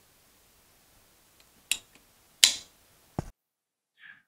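Three short sharp clicks and knocks of hard plastic kit parts being handled, spaced under a second apart, the last a duller knock that cuts off suddenly.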